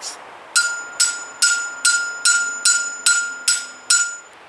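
Steel T-post being hammered into the ground: a steady run of nine blows, about two and a half a second, each ringing with a clear metallic tone.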